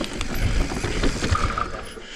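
Commencal full-suspension mountain bike rolling down a rough, rocky trail: the frame, chain and tyres rattle, with heavy thumps over rocks and roots and scattered clicks. The noise eases off near the end as the bike slows.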